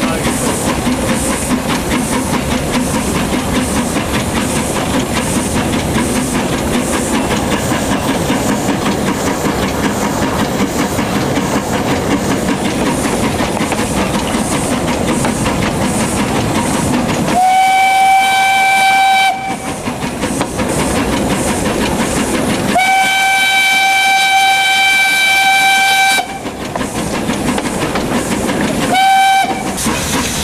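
Px-class narrow-gauge steam locomotive running along the track, heard from beside the cab. Past the halfway point its steam whistle blows three times on one steady note: a blast of about two seconds, a longer one of about three and a half seconds, and a short toot near the end.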